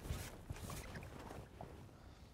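Faint splashing of a landing net being lowered into lake water, with a brief louder splash near the start.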